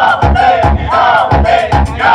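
A large crowd chanting and shouting together over loud music with a heavy, regular bass beat, about two to three beats a second.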